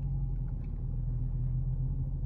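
A car engine idles with a steady low hum, heard from inside the cabin.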